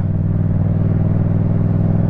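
Yamaha MT-07's parallel-twin engine running at steady, constant revs while the motorcycle cruises slowly in traffic.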